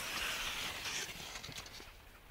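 Crunching and scraping in packed snow, with a few soft knocks, fading off toward the end.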